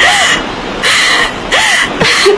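A bird's harsh call, repeated three times about three-quarters of a second apart.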